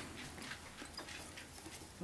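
Quiet room tone with a few faint, soft ticks, from fingers handling the fly and thread at the tying vise.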